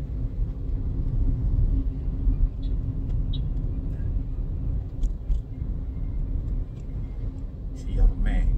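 Car cabin noise while driving: a steady low rumble of engine and road, with a faint steady hum.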